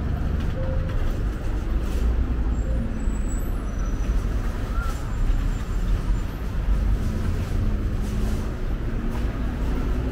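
Steady city street traffic: a continuous low rumble of cars passing on a multi-lane road.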